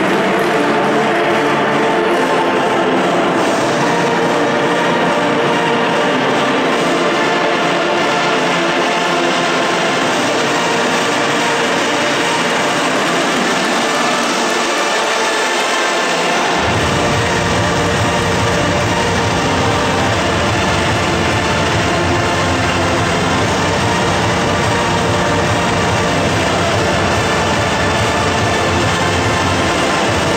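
Music playing over the hall's sound system with steady crowd noise, during the break between rounds of a boxing bout. A deeper bass comes in a little past halfway.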